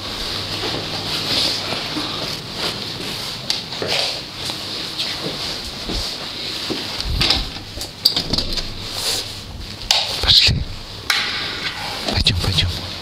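Footsteps and handling rustle, then a run of sharp clicks and clunks in the second half as the apartment's entrance door and its locks are worked, opened and shut.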